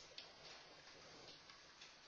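Near silence: quiet room tone with a few faint, scattered clicks.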